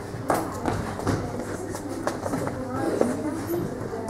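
Indistinct chatter of children's voices in a classroom, with a few sharp knocks.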